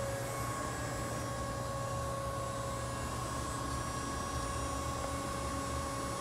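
Variable-speed pool filter pump running steadily at its reduced heat-pump speed, a low hum with a steady whine.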